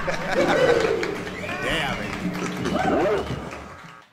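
Indistinct voices mixed with bird calls, fading out.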